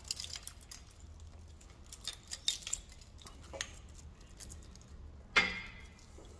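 Scattered light clicks and rattles of a wiring harness's plastic connectors and loom knocking against a bare engine as it is handled and routed, with one louder clack near the end.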